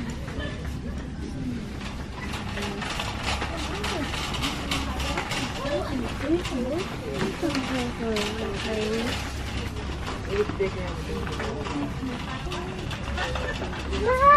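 Metal shopping cart rattling and clattering as it is pushed along a store floor, with voices in the background.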